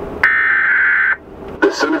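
Emergency Alert System header burst: a steady buzzing electronic tone about a second long that cuts off abruptly. An announcer's voice reading the alert begins near the end.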